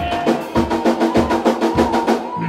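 Live rock band playing: drums strike a fast, even run of hits, about five a second, under held electric guitar chords.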